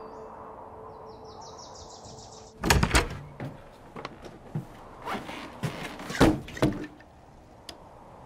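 A low steady drone with faint high chirps stops suddenly. Then comes one loud thump, followed by a run of heavy thuds about two a second for some four seconds.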